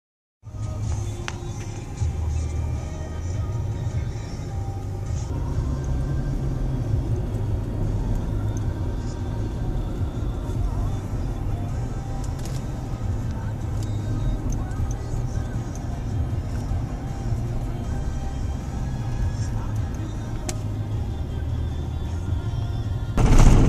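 Steady low road rumble heard inside the cabin of a moving car.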